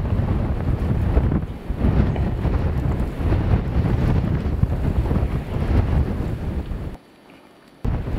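Blizzard wind buffeting the microphone: a loud, low rumbling roar that cuts out suddenly about a second before the end, then comes back.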